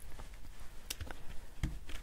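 A few light taps and soft knocks as a plastic-cased ink pad is handled and dabbed onto a paper die-cut lying on cardstock on a tabletop.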